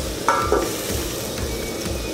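Sliced onions sizzling in hot oil in an aluminium kadai, being stirred with a spoon while they fry towards brown. A steel lid is set over the pan, with a short metallic ring about a third of a second in.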